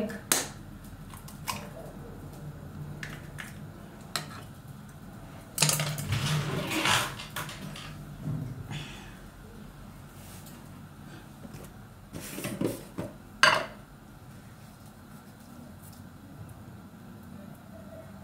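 Kitchen handling sounds: an egg tapped and cracked with a knife into a ceramic bowl, with clinks and knocks of dishes and utensils on the counter. The loudest knocks come about five and a half and thirteen and a half seconds in.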